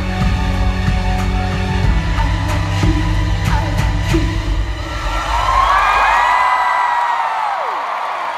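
Closing bars of a live pop song in an arena, the deep held bass note dropping away about five seconds in. The crowd whoops and screams, with long high wails swelling near the end.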